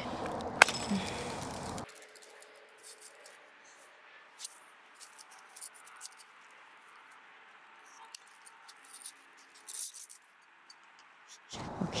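Faint, scattered clicks and scrapes of a resin-bonded sand mold being handled and worked open with gloved hands.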